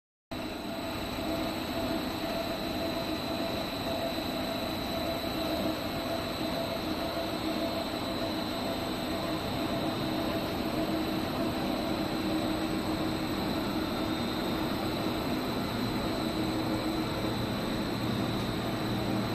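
PVC foam board extrusion line running: a steady mechanical hum and whir from its electric motors, screw feeder and extruder, with a thin steady high whine over it.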